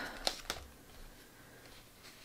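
Faint handling of embroidery floss being pressed onto taped paper on a journal page, with two small ticks in the first half second.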